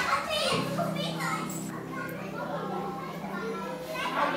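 Children's voices chattering in the background, with a steady low hum that sets in about half a second in.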